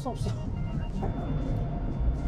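Low, steady rumble of an automatic car wash heard from inside the car, with a short laugh near the start and background music.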